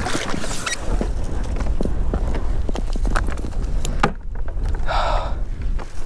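Water splashing as a measuring board is dipped beside a plastic fishing kayak, then many short knocks and clatter from the board, fish and gear being handled against the kayak hull, over a steady low rumble of wind on the microphone. A brief rush of water comes about five seconds in.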